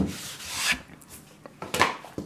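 A hardcover album package knocking onto a wooden tabletop, then sliding and rubbing across the wood, with a second short scrape near the end. The knock at the start is the loudest sound.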